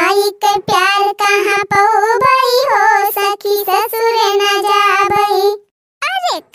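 A high-pitched cartoon character's voice singing in long, mostly level held notes with short glides and brief breaks. It stops shortly before the end.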